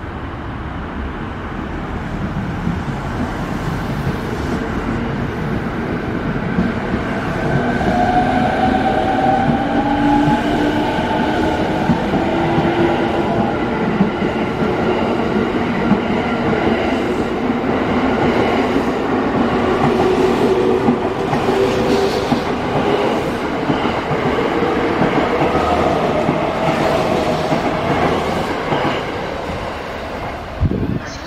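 JR East E217 series electric train pulling out and accelerating past: the traction motors' whine rises in pitch over a steady rumble of wheels clacking on the rails. It grows louder over the first several seconds and fades near the end as the last cars go by.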